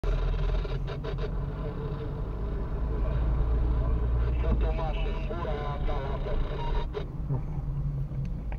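A car driving slowly, heard from inside the cabin: a steady low engine and road rumble, with a few sharp clicks and knocks near the start and end.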